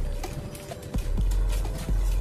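Clear plastic sheet rustling and crinkling as it is lifted and peeled back by hand, with a few dull knocks against the countertop.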